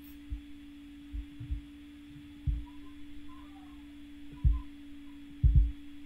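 A steady low electrical hum with about six soft, low thumps scattered through it.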